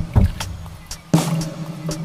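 Instrumental music: a heavy low drum beat about once a second, with a quick double hit at the start, over sustained low notes.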